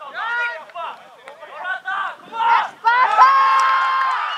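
Footballers and onlookers shouting as a goal goes in. The voices start as short calls and rise about three seconds in into long, held cheering yells.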